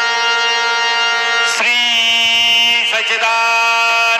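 Devotional aarti sung together by a group, long notes held steady and moving to a new pitch twice.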